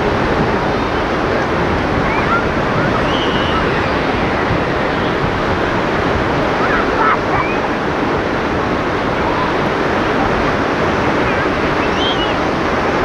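Sea surf washing steadily onto a beach, a continuous loud rush with no pauses.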